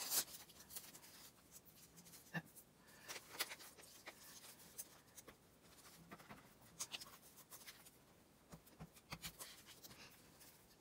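Paper being handled on a desk: faint rustles and soft scrapes as torn paper pieces are lifted, shifted and pressed down, with the sharpest rustle right at the start.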